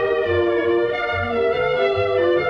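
Orchestral cartoon score: held violin-led melody notes over bass notes on a regular beat.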